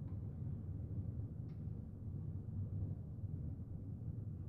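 Quiet room tone: a steady low hum, with one faint tick about one and a half seconds in.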